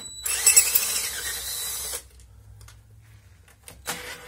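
A cordless power tool runs in one burst of just under two seconds against an automatic transmission pan bolt, then stops. It sounds weak against the bolt, which does not come loose.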